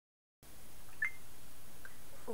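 Room tone: steady low background noise after a moment of silence, with one short high-pitched blip about a second in.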